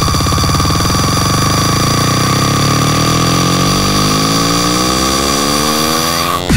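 Dubstep build-up: a buzzy electronic synth whose pitch rises steadily under steady high sustained tones, pulsing rapidly at first and then smoothing into one climbing tone.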